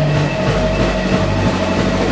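Live rock band playing loud: a dense, steady wash of electric guitar and bass.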